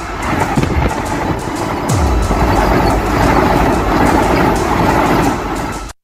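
Train passing right beside a camera at track level: a loud, steady rumble and rush of wheels over the rails. It cuts off abruptly near the end, with music underneath.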